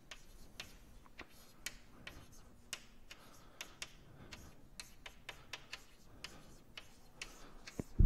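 Chalk tapping and scraping on a blackboard while words are written, a faint irregular run of sharp clicks, about three or four a second.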